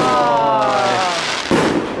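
Fireworks going off, with a sharp firework bang about one and a half seconds in. Over the first second a voice holds a long, slowly falling "ooh" of amazement.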